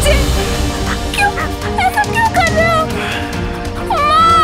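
A girl's short, high-pitched cries, repeated many times, over steady background music.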